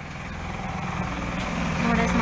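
A motor vehicle's engine running nearby, a steady low rumble growing louder.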